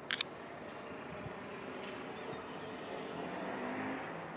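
Steady rumbling vehicle noise that grows gradually louder, with one brief click near the start.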